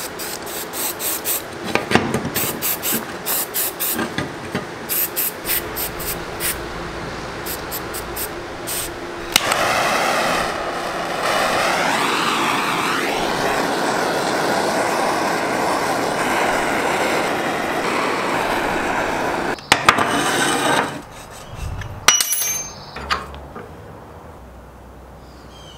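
A run of quick sharp taps and scrapes on the metal pump base. Then, about ten seconds in, a propane torch flame hisses steadily for about ten seconds while it heats the joint between the pump's pipes and its foot plate, and cuts off. A few sharp knocks follow near the end.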